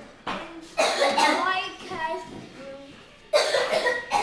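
A child's voice in short, breathy outbursts with sudden starts, around a second in and again near the end, with no clear words.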